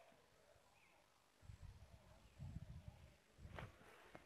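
Near silence, with a few faint low rumbles coming and going.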